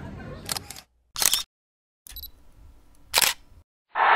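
Three short, sharp shutter-like clicks, a second or two apart, with dead silence between them.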